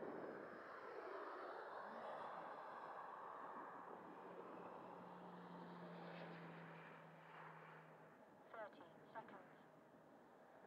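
Distant 80 mm electric ducted-fan RC jet (Xfly T-7A) flying past: a steady rushing fan whine that swings in pitch during the first couple of seconds, then fades gradually.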